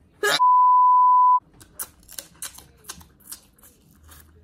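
A short burst, then a steady high censor bleep about a second long, edited in with all other sound muted under it. After it come many small wet clicks and cracks of seafood being eaten: crab shell and meat handled at the mouth and chewed.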